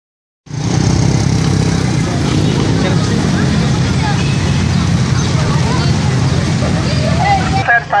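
Steady low rumble of nearby motor traffic, with people's voices talking faintly over it; it cuts off abruptly near the end.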